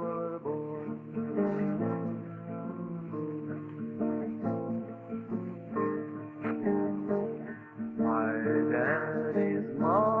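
Solo acoustic guitar playing an instrumental passage of a slow folk ballad, one note or chord after another; a wordless male voice glides up into a held note near the end.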